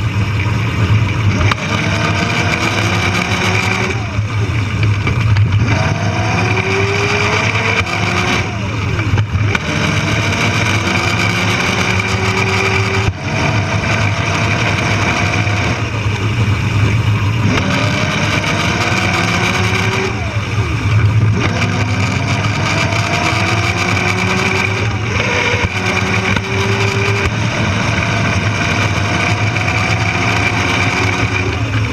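The electric drive of a modified Power Wheels racing kart, heard onboard at speed: a steady low drone with a motor whine that climbs in pitch over a second or two as the kart speeds up, then drops back. This repeats every few seconds through the run.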